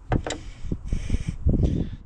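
Irregular low rumbling, like wind buffeting the microphone, with a few light knocks and rustles near the start.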